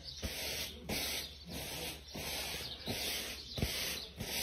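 Adhesive stencil transfer being rubbed back and forth against fabric, about six even swishing strokes. It is being fuzzed so that it won't stick so much to the surface.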